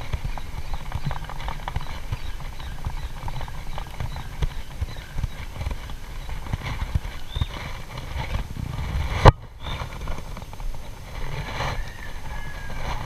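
Dense, irregular knocking and rubbing from rod and reel handling as a light spinning outfit is worked. There is one sharp, loud knock about nine seconds in, followed by a brief drop-out.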